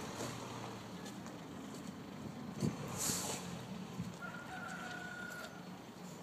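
A faint animal call held steady at one pitch for about a second, some four seconds in, over a steady outdoor background. A sharp knock comes just before it, about two and a half seconds in, followed by a brief hiss.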